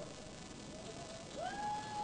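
Quiet hall ambience between words. A faint tone slides up about one and a half seconds in and holds steadily to the end.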